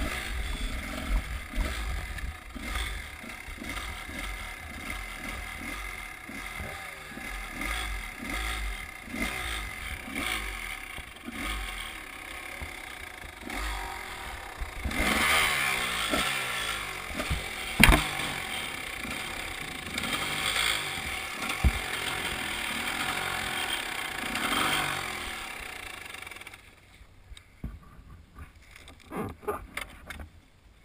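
Two-stroke Husqvarna enduro dirt bike running along a dirt track, its engine revving up and down, with a sharp knock about two-thirds of the way through. Near the end the engine stops, leaving a few small knocks.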